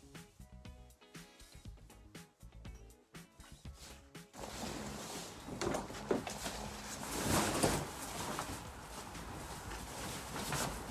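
Background music for about four seconds, then it cuts to live stable sound: louder, uneven rustling and handling noise from the horse rug being worked on the horse, with some wind on the microphone.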